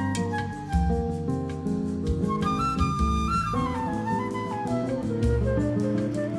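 Background music: a melody stepping up and down over held bass notes, with a light steady beat.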